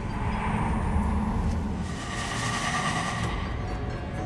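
Ominous background score: a low rumbling drone under long held tones, swelling louder and brighter about halfway through.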